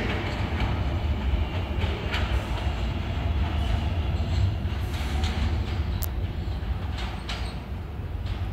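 New York City subway train running in the tunnel: a steady low rumble with a few sharp clicks of wheels over rail joints, getting a little quieter near the end as it pulls away.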